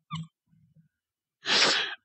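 The tail of a man's laugh, then a quiet pause and a sharp, breathy intake of breath lasting about half a second near the end.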